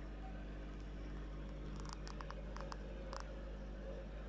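Faint steady low hum, with a handful of light clicks and ticks about halfway through.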